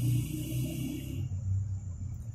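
Low steady background rumble, with a faint hiss that drops away a little past a second in.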